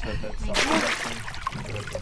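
Sea water splashing and sloshing, starting about half a second in, as a plastic crate is lowered into the water at a floating diver's chest.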